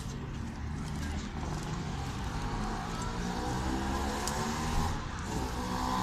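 A motor vehicle's engine accelerating, its pitch rising steadily from about two seconds in, over a low street rumble.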